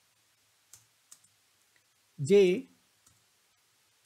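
A few faint computer-keyboard keystrokes, spaced irregularly, as a short query is typed.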